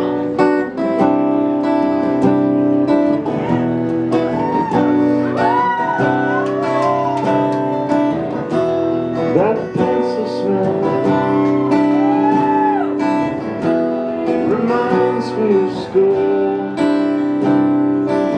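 Two acoustic guitars strumming chords together in a live, unamplified-sounding intro to a song, with a steady strummed rhythm.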